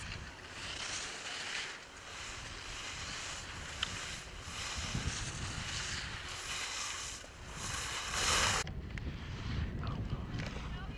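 Wind rumbling on the microphone with the hiss of skis sliding over snow, swelling louder as the skier comes close and cut off suddenly near the end.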